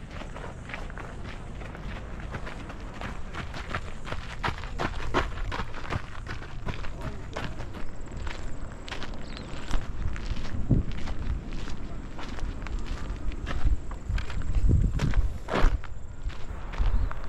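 Footsteps of a hiker walking up a steep trail, about two steps a second, over a steady low rumble.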